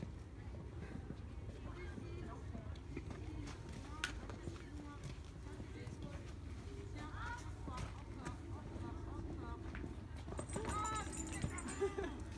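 A horse cantering on a sand arena, its hoofbeats heard under the low chatter of people around the ring, with voices growing clearer near the end.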